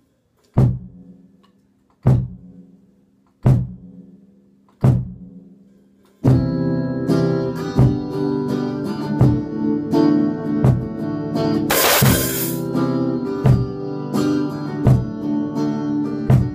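Guitar and drum kit jamming. It opens with four single hits about a second and a half apart, each left to ring out. About six seconds in, full steady playing starts, with a loud cymbal crash about twelve seconds in.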